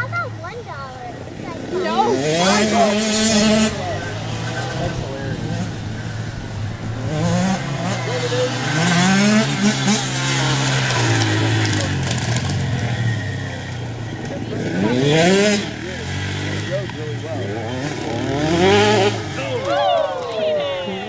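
Small dirt bike engines revving as they race around a dirt flat track. The pitch rises with each burst of throttle and drops off again several times, loudest a few seconds in, around the middle and near the end.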